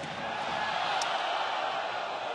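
Steady crowd noise from spectators filling a basketball arena, with one brief sharp click about a second in.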